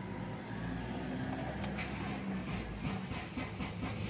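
Honda CR-V's 2.4-litre four-cylinder engine idling steadily, heard from inside the cabin, with a few light clicks about a second and a half in.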